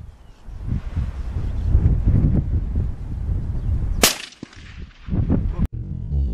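Wind buffeting the microphone, then about four seconds in a single rifle shot with a short echo trailing off.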